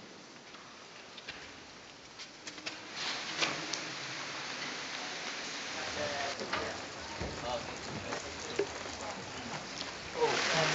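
Rain falling steadily, coming in about three seconds in after a quiet start, with a few sharp ticks among the patter.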